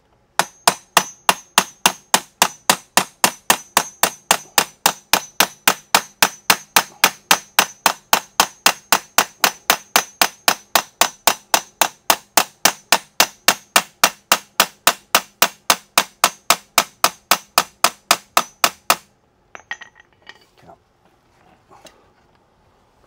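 A hammer tapping a metal pin down into a mobility scooter's tiller knuckle: a long run of even strikes, about four a second, each with a faint metallic ring. The strikes stop near the end, followed by a few softer knocks of handling.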